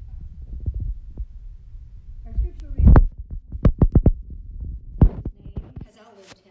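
Low rumbling handling noise on a handheld camera's microphone, with a quick run of loud, short voice-like bursts in the middle, about five a second.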